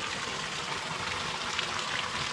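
Sump pump running, with a steady rush of water as it pumps out the flood water.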